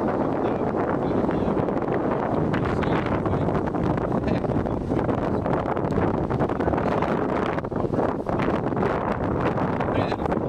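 Wind blowing across the camera microphone: a steady, unbroken rushing noise.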